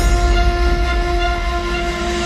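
Drum and bass track: a held, horn-like synth chord over heavy sustained sub-bass, with no drums.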